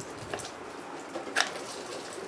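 Heavy 220-volt extension-cord plug being worked loose from its connector by hand: faint rubbing and handling, with a few small clicks and a sharper one about one and a half seconds in.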